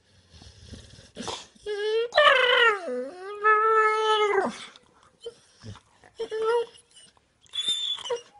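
A sleeping dog making high-pitched squeaking whines. The longest and loudest whine comes about two seconds in, sliding down in pitch and back up, followed by shorter squeaks near the end.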